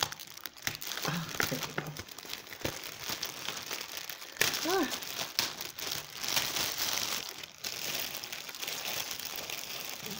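A clear plastic treat bag crinkling and crackling continuously as it is handled and worked open from under its cardstock topper.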